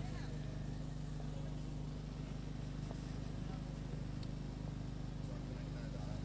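A steady low hum with faint background noise, and faint distant voices near the start. No bat or ball sound stands out.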